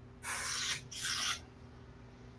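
Two short hissing noises, the first about half a second long and the second a little shorter, just apart, over a faint steady hum.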